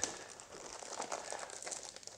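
Clear plastic bag around a wireless microphone receiver unit crinkling faintly as the unit is handled and lifted out of its foam tray, with one sharp tick at the very start.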